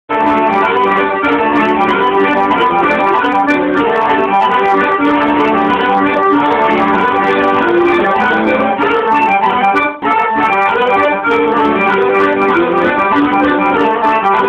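Two piano accordions playing a duet, full chords of reed tones moving together, with a brief break about ten seconds in.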